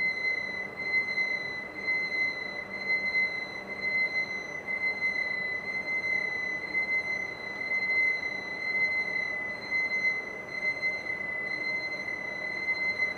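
Ink alarm buzzer on a UV flatbed printer sounding one continuous high-pitched tone, set off because the ink tanks have not been filled.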